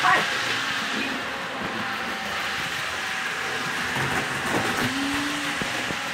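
Model train set running steadily on its track, a continuous even running noise.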